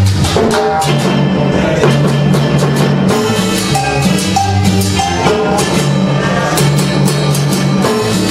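Live cumbia band playing an instrumental passage with a steady dance beat. A repeating electric bass line runs under keyboard chords, with congas and timbales.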